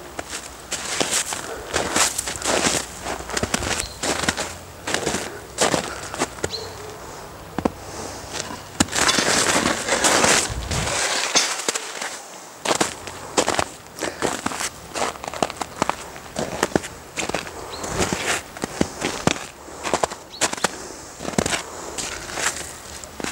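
Footsteps crunching and rustling through dry, matted grass, with irregular crackles. There is a denser rustling stretch about halfway through.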